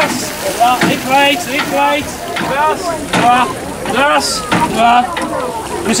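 Voices calling out over the even hiss of water spraying from the hose of a hand-operated fire pump. The voices are the loudest sound.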